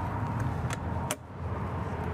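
Escape door of an aluminium horse trailer being unlatched and swung open: a few light metallic clicks, the sharpest a little past halfway, over a steady low hum.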